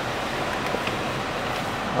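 Steady hiss of background noise inside a car's cabin, with a couple of faint clicks about three quarters of a second in.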